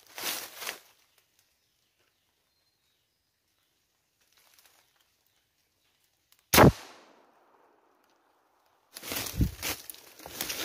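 A single gunshot from a hunting long gun about two-thirds of the way in, sharp and loud, with a short echoing tail. Near the end comes a burst of rustling and crunching through dry leaves and brush.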